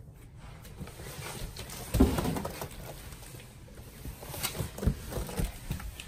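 A large cardboard mattress box being pushed and handled on carpet: a heavy thump about two seconds in, then several lighter knocks near the end.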